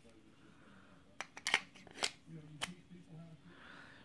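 A few sharp clicks and light scrapes from a SOG PowerPlay multi-tool being handled in its friction-fit sheath, the tool and sheath knocking against each other.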